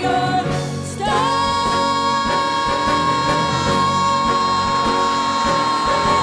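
Two female singers performing a Broadway-style duet over live musical accompaniment. About a second in, a single high note starts and is held steadily through the rest.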